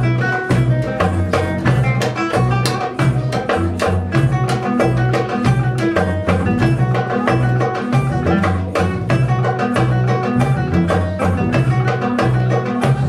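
A live trio of nylon-string classical guitar, double bass and drum kit playing a busy instrumental tune, with a steady walking bass line under quick guitar notes and frequent sharp drum strikes.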